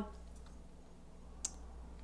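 Quiet room tone with a low steady hum, broken by a single short, sharp click about one and a half seconds in.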